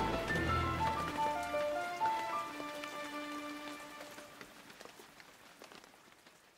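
Gentle melodic background music with held notes, mixed with the patter of falling rain. A low rumble dies away in the first second or so, and the whole mix fades out steadily toward silence.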